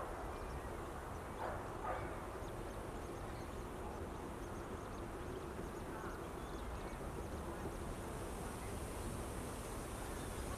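Faint steady background noise with a low rumble, and a few faint short animal calls about one and a half to two seconds in.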